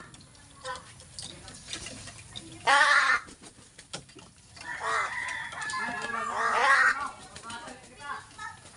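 Pet crows giving loud, harsh begging calls while being hand-fed pieces of pork: one short call about three seconds in, then a longer run of calls from about halfway through to near the end.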